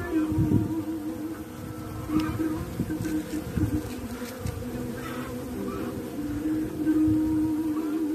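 Honeybees buzzing close to the microphone, a steady hum that wavers in pitch as the bees come and go. Irregular low rumbling runs underneath.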